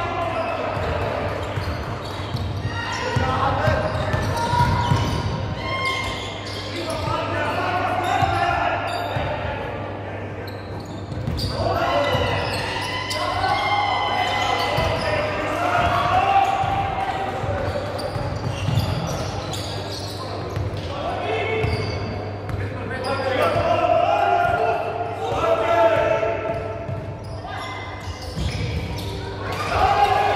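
Basketball dribbled and bouncing on a hardwood gym floor during play, with voices of players and spectators calling out, echoing in a large sports hall.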